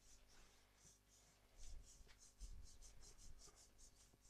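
Very faint scratching or rubbing, a quick series of short strokes, about three or four a second, over the second half, with a few soft low thumps of handling or wind on the microphone.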